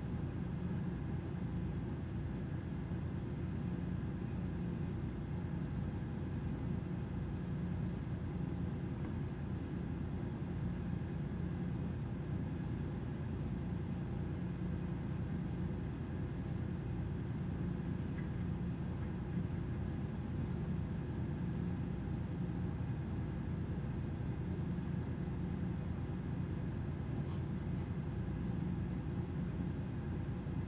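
Steady low machinery hum with a few faint steady tones over it, unchanging throughout, typical of a ship's running generators and engine-room machinery heard on deck.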